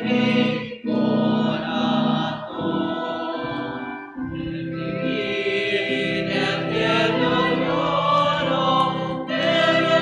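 A choir singing a slow sacred hymn in long held notes, breaking briefly between phrases about a second in and about four seconds in.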